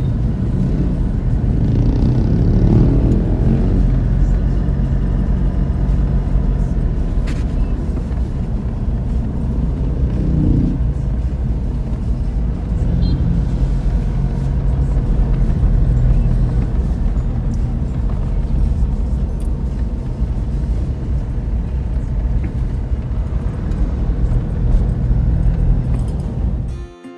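Car driving along a paved road, heard from inside the cabin: a steady rumble of engine and tyres.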